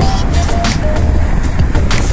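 Background music with a melody of short notes over a steady beat, laid over a low rumble that fits wind buffeting the microphone as the bike moves.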